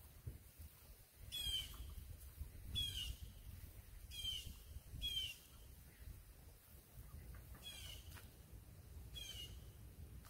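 A bird calling six times, each a short call that slides downward in pitch, spaced a second or two apart, over a low outdoor rumble.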